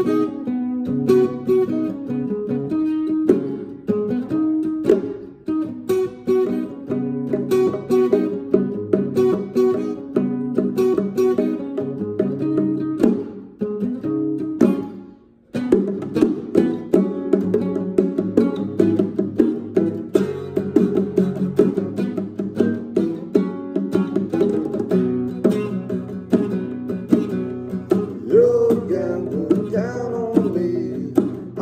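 Acoustic guitar playing picked notes, breaking off briefly about halfway through, then playing on.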